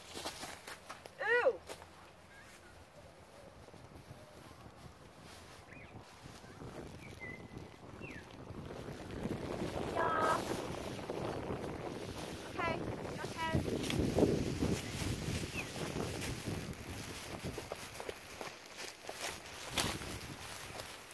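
Rustling and footsteps through dry grass and brush, building to its loudest in the middle of the stretch, with a few short voice sounds.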